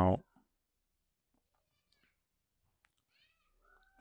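A man's voice finishing a drawn-out "Now," then near silence with a few faint, small clicks before speech resumes.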